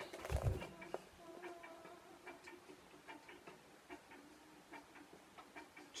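Faint handling of a cardboard record gatefold sleeve: a soft thump near the start, then scattered light clicks. Behind it, a pigeon cooing faintly in short repeated phrases.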